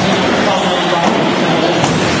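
1/10-scale electric 4WD RC buggies racing around an indoor track: a steady, dense noise of motors and tyres that echoes in the hall, with a brief rising whine near the end.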